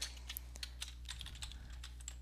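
Computer keyboard keystrokes: a quick, irregular run of faint key clicks as code is typed.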